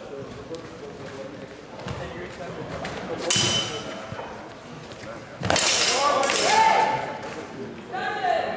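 Steel longsword blades clashing: a strike about three seconds in rings on with a high, steady ping for about a second. A louder sharp burst about halfway through runs straight into raised voices.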